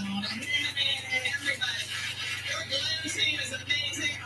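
Music from a television playing in the room, over a steady low hum.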